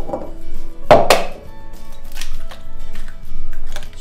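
Eggs cracked against the rim of a mixing bowl: one sharp knock about a second in, with lighter clicks after it, over background music.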